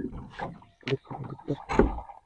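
Short, irregular splashes and knocks at the side of a small wooden boat, about four in two seconds, as a hooked fish pulling hard on a hand line is hauled up to the hull.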